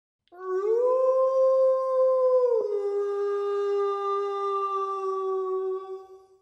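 A single long howl that rises and holds, then drops suddenly to a lower pitch about halfway through and holds there until it fades near the end.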